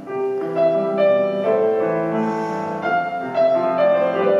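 Grand piano played solo, a new note or chord struck about every half second and left to ring.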